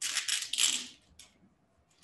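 Packaging rustling and scraping as a boxed display is slid out of its box. It is a burst of about a second, followed by a faint tick.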